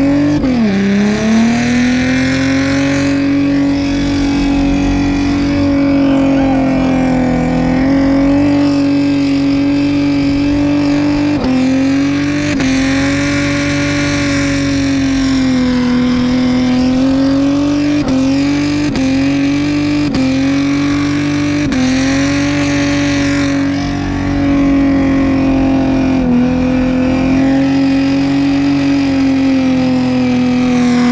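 Car engine held at high revs through a burnout, heard from inside the cabin. The pitch stays nearly level, with several brief dips as the throttle is eased and picked up again, over the hiss of spinning tyres.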